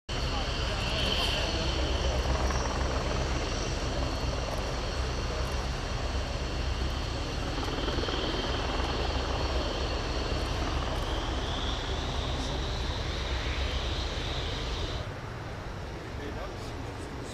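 Boeing P-8A Poseidon's twin CFM56-7B turbofan engines running at low taxi power: a steady rumble under a high whine. The sound drops off suddenly near the end.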